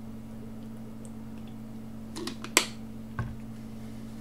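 Drinking bottle being handled: a few small clicks about two and a half seconds in, the sharpest a single snap-like click, then a dull thump a little after three seconds as the bottle is set down on a desk. A steady low hum runs underneath.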